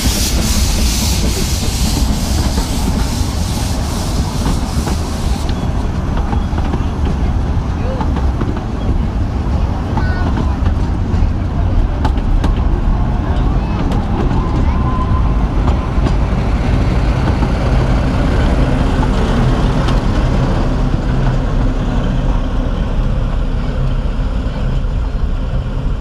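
Narrow-gauge steam tank locomotive Px38 805 pulling a passenger train past, with a loud hiss of escaping steam that stops about five seconds in. Then the coaches roll by with a steady rumble and scattered wheel clicks on the rails.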